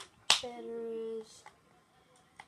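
A sharp click, then a short voice-like sound held on one steady pitch for under a second.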